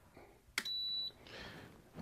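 Electronic racket swingweight machine giving one short, high beep, lasting about half a second, right after a click about half a second in.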